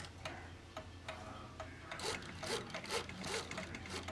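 Old mechanical clock movement worked by hand, its chiming train running very slowly: light irregular clicks with rubbing and scraping from the mechanism.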